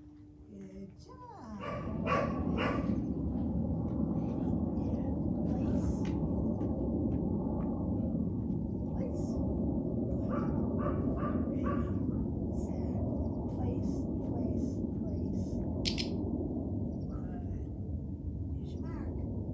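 A steady low rumbling noise starts about a second and a half in and runs on evenly, with faint short ticks over it and a brief higher hiss near the end.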